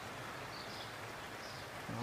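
Steady rain falling, an even hiss, with a few faint high bird chirps.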